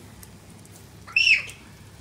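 A single short high-pitched call that rises and falls, a little past a second in.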